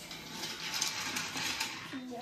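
Wooden toy train rolled by hand along wooden track: a steady rolling rattle of the wheels with a few light clicks.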